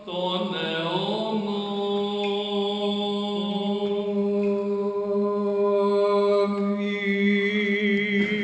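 Byzantine chant of a Greek Orthodox service: a slow, unaccompanied sung line of long held notes that glides up about a second in and then holds steady.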